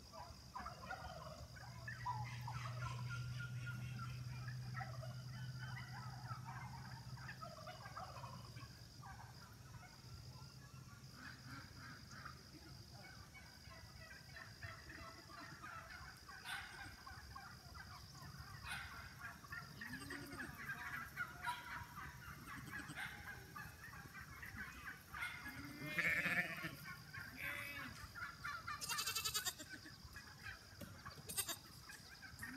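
Scattered calls from farm animals, honk-like and bleat-like, with one louder call about 26 seconds in. A low hum runs through the first third, and a faint steady high tone sits underneath.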